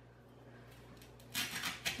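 Quiet room tone, then from a little past the middle a few short, scratchy rustles: an artificial flower stem and its leaves being handled and pushed into dry floral foam.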